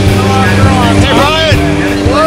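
Jump plane's engine droning steadily inside the cabin during the climb, with voices over it.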